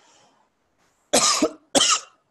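A man coughing twice, two short loud coughs a little over half a second apart, from a cold and cough that came on that day.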